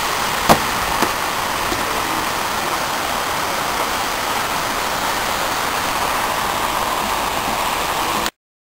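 Steady rush of water pouring over a small concrete weir into a lake, with one brief knock about half a second in.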